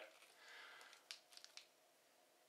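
Near silence: a faint rustle, then a few light clicks, from a plastic-bagged paperback book being handled.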